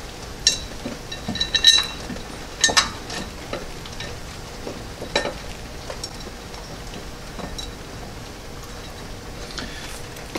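A few small metallic clicks and clinks as 13 mm bolts are started by hand into the housing between the engine and the hydraulic pump: a couple in the first two seconds, one near three seconds and one about five seconds in. Under them runs a steady hiss of rain.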